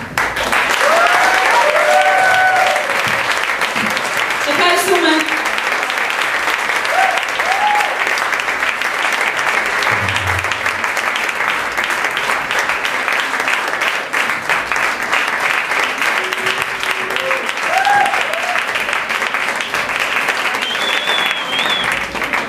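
Audience applauding steadily after a song ends at a live club gig, with a few shouts from the crowd.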